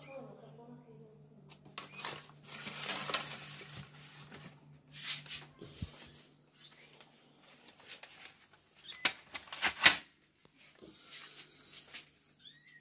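Rustling and scraping of cloth and bedding being handled around a kittens' nest, in several noisy bursts, loudest about ten seconds in.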